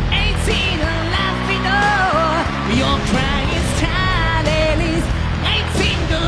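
A rock band playing live, with a male lead singer singing into a microphone over loud drums and bass, the drum hits coming in a steady beat.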